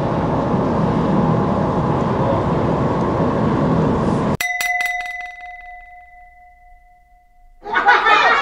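Steady outdoor background noise for about four seconds, cut off abruptly by a bell-like chime sound effect: a quick cluster of strikes, then a clear ringing tone that fades over about three seconds.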